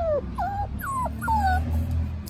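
A puppy whimpering: about four short, high cries in quick succession, most of them falling in pitch.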